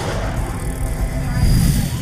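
Cinematic whoosh and deep rumble of an animated cinema-trailer intro, swelling to its loudest about a second and a half in with a rising hiss on top, then falling away sharply at the end.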